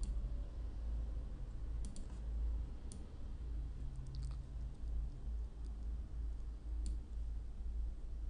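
A handful of sparse computer mouse clicks, about five spread over several seconds, over a steady low hum.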